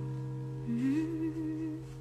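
A woman softly humming one short note that rises and then holds, about a second long, with a low steady hum underneath.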